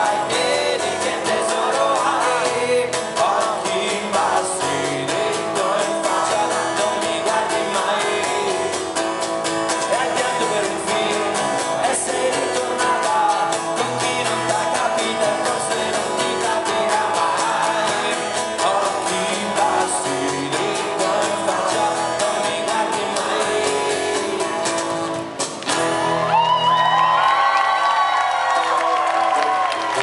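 Live acoustic rock band playing: strummed acoustic guitars, drum kit and a lead vocal. The song stops about 25 seconds in and the audience starts cheering.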